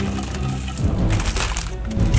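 Background music, with a few dry cracks and knocks as blocks of uncooked Korean fire noodles (Buldak instant ramen) slide off a plate and tumble into a pot of water.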